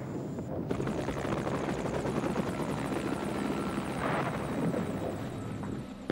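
Helicopter running steadily, its rotor beating in rapid pulses.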